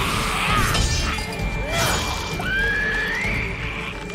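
Action soundtrack of an animated series: music with two crashing, shattering hits in the first two seconds, followed by a high shriek that rises in pitch.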